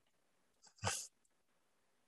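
One short, breathy vocal noise from a man at the microphone about a second in; otherwise near-silent room tone.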